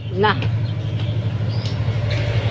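Steady low hum of an idling engine, with a fine even throb, under a single short spoken word near the start.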